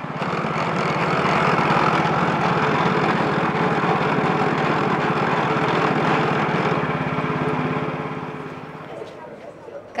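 A small engine running steadily with a fast, even pulse. It fades in at the start and fades out about eight seconds in.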